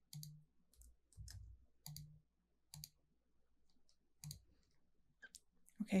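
Faint, irregular clicks of a computer mouse as lines are drawn in CAD software: about six sharp clicks over four seconds or so, then a pause.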